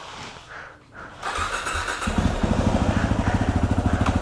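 Yamaha WR250R single-cylinder dirt bike engine being started: a brief crank about a second in, then it catches and runs at idle with a quick, even beat.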